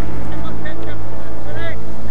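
Fishing boat's engine running with a steady, low pulsing drone, heard on deck.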